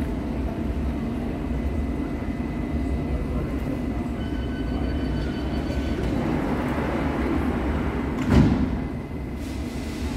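A London Underground S7 Stock train stands at the platform with a steady low rumble. A rapid series of high warning beeps sounds from about four to six seconds in. The sliding doors then shut with a sharp thud about eight seconds in.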